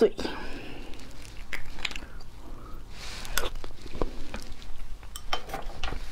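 Close-miked eating sounds with braised beef bone marrow: chewing and mouth noises, and the bone pieces being handled, heard as scattered small sharp clicks and brief wet sounds.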